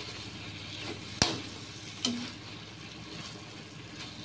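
Squid in a thick salted-egg sauce sizzling in a wok as it is stir-fried, a metal spatula scraping and turning through it. A sharp clack of the spatula on the pan comes about a second in, and a lighter knock follows about a second later.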